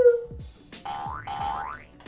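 Cartoon-style boing sound effect, two rising pitch glides one after the other, over light background music.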